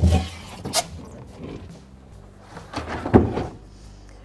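A steel-wheeled compact spare tire being lifted out of a car's spare-tire well: a heavy thump and rubbing at the start, then a few knocks and clunks of handling, the sharpest about three seconds in.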